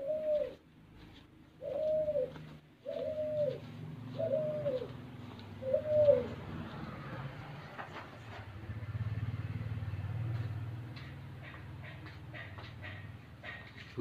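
A caged dove cooing: five short notes, each rising and falling in pitch, about a second and a half apart. A low steady hum follows in the second half.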